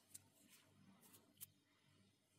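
Near silence: room tone, with a few faint clicks of glass seed beads and a needle being handled, the clearest about one and a half seconds in.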